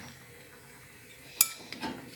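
A metal utensil clinks once sharply against a dish about one and a half seconds in, with a brief ring, followed by a couple of lighter knocks.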